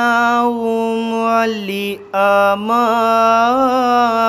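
A man reciting the Quran in the melodic tilawat style, holding long steady notes with small ornamented turns. There is a brief pause for breath about two seconds in, and then the next phrase begins.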